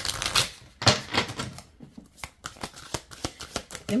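A deck of paper oracle cards being shuffled by hand: two short bursts of rapid card flicks and slaps, then a quicker run of ticks near the end.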